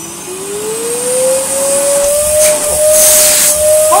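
Hoover Sonix 2100-watt cyclonic cylinder vacuum cleaner's motor speeding up as its power control is turned from minimum to full. Its whine rises in pitch and grows louder over the first second and a half, then holds steady. Bursts of hiss come about halfway through and again a little later.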